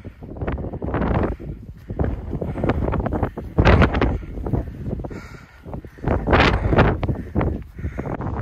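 Strong gusting mountain wind buffeting the microphone in irregular loud blasts, the biggest surges a little under four seconds in and again at about six and a half seconds.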